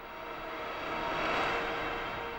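Rushing whoosh transition sound effect that swells to a peak about a second and a half in, then fades.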